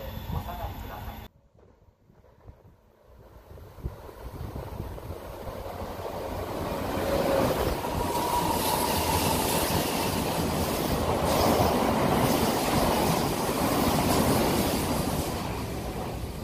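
Odakyu 8000 series electric train running through the station at speed without stopping: the rumble of wheels on rail builds as it approaches and is loudest for several seconds as the cars pass, with a brief high tone about eight seconds in, then eases off.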